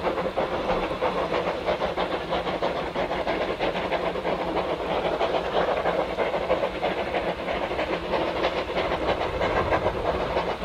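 Industrial saddle-tank steam locomotive working hard with a coach in tow: a rapid run of exhaust beats from the chimney over a steady hiss of steam.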